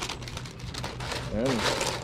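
A stiff paper Dutch oven liner crinkling and rustling unevenly as it is unfolded and pressed down into a cast iron Dutch oven.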